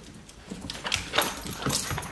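A small dog's claws clicking on a hardwood floor in a quick, irregular run of taps as it scrambles after a thrown toy.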